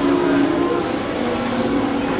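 Supermarket background noise: a steady low hum with faint voices in the background.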